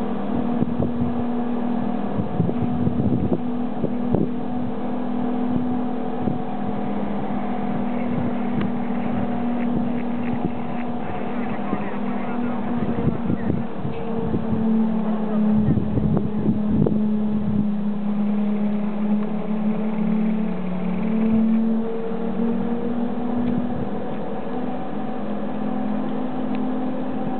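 A steady mechanical hum with a few even overtones, overlaid by irregular wind buffeting on the microphone.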